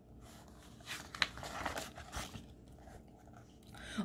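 A paper page of a picture book being turned by hand: faint rustling and a string of short crackles over about two seconds.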